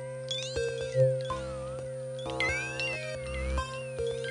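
Electronic music: steady held tones and repeated struck notes, with a loud low hit about a second in, overlaid by sliding pitch sweeps that rise and fall like meows, zigzagging up and down in the second half.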